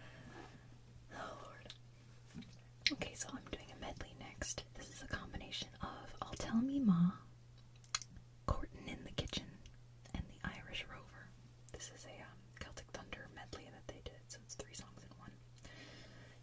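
A woman whispering close to the microphone between songs, with many soft clicks scattered through it and one brief louder voiced sound about seven seconds in.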